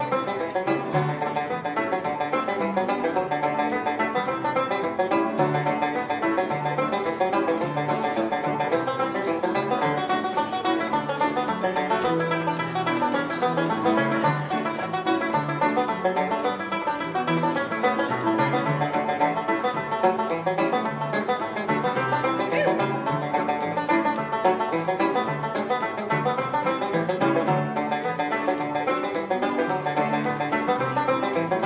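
Irish tenor banjo played solo with a pick: a lively tune in a steady, unbroken run of quick plucked notes.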